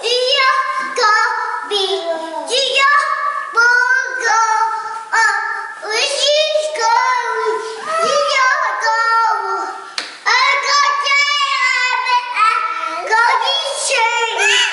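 A young child's high voice singing and babbling without clear words, almost without pause, in notes that slide up and down in pitch.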